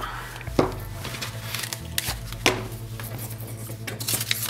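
Sheets of paper handled and sliced with sharpened knife blades in a sharpness test, with two sharp clicks about half a second and two and a half seconds in, over a steady low hum.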